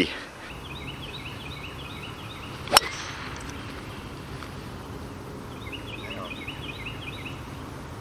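Golf driver striking a ball off the tee once, a sharp crack about three seconds in, over steady wind noise. A repeating high chirping call is heard before and after the strike.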